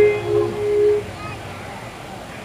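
An electric guitar note held and ringing out for about a second, then a low murmur of audience voices.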